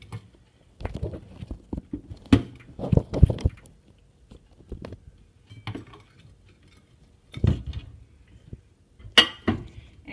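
Dishes and kitchen things being handled: scattered clinks and knocks, a few at a time, with short quiet gaps between them.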